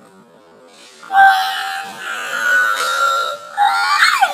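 A young woman's long, high-pitched squeal, starting about a second in and held for some two seconds, breaking off briefly before she squeals again near the end.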